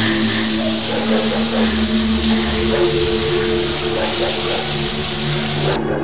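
Steady rush of running water over low, sustained music tones; the water cuts off suddenly near the end while the music carries on.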